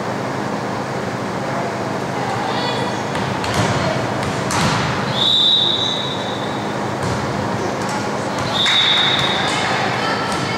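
Volleyball referee's whistle blown twice, each a steady blast of about a second, about five seconds in and again near nine seconds, over the chatter of voices in a gym. A few knocks of the ball come just before the first blast, which signals the serve.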